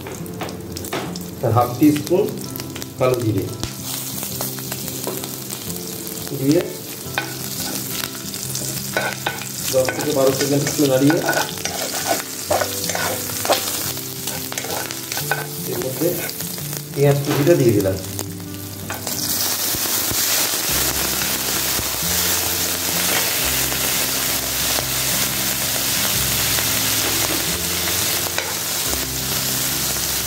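Chilies frying in hot mustard oil in a kadai, with a steel spatula stirring and scraping against the pan in scattered strokes. About two-thirds of the way through, a louder, steady sizzle sets in as sliced onions go into the oil.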